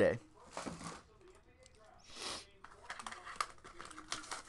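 Trading card pack wrapper being handled and torn open: soft crinkling, with a short rustling tear about two seconds in and small crackles near the end.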